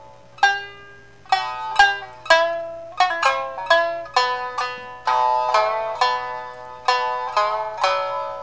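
Solo shamisen playing the instrumental introduction to a Japanese folk song, its struck notes sharp at the start and ringing briefly before each dies away. The notes come in an uneven rhythm of one to three a second, with a quicker run about three seconds in.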